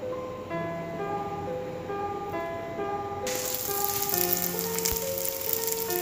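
Slices of cooked glutinous rice shallow-frying in hot oil in a pan: a sizzle that starts suddenly about three seconds in, over background music.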